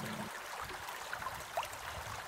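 Faint, steady trickle of a shallow creek flowing through a bottomless arch culvert, with a brief rising chirp about one and a half seconds in.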